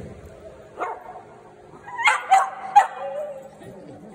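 Small dogs barking: one short bark just before a second in, then three quick, loud barks about two seconds in.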